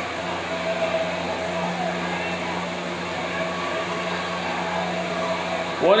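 A steady low machine hum with faint voices underneath.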